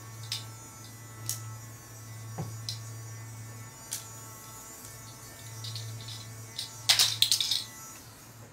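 A steady low electrical hum with a few light ticks scattered through it, then a quick clatter of sharp clicks and knocks about seven seconds in.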